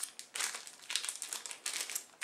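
Plastic wrapper of a pocket-size tissue pack crinkling as it is handled, an irregular run of quick crackles.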